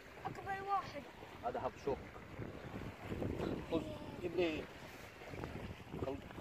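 Wind rushing over the microphone, with a few short snatches of a man's voice.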